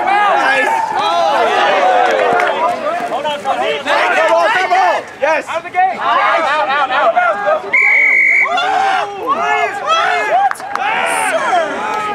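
Men shouting over one another on a rugby pitch during a tackle and ruck, with one short, steady referee's whistle blast about eight seconds in.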